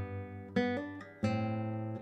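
Nylon-string classical guitar playing two-note intervals of a tenth in G major, a bass note and a melody note sounded together. New notes are plucked about half a second in and again just past a second in, each left to ring.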